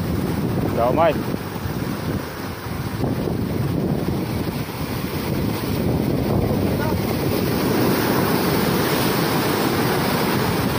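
Surf breaking and washing over coastal rocks, with wind buffeting the microphone. A short shout about a second in.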